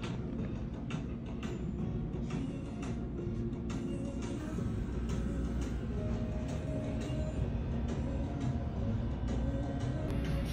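Restaurant background sound: music playing over a steady low rumble, with scattered short clicks and clinks throughout.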